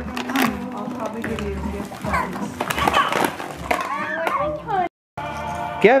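Several people and young children talking over each other, with music playing in the background. The sound cuts out completely for a moment near the end.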